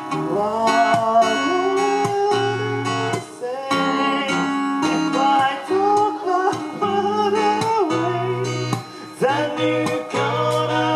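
A man singing a slow melody in long held notes, accompanied by a plucked acoustic guitar.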